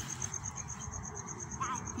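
Cricket chirping steadily: a high pulsing note repeating about eight times a second, with a low rumble underneath.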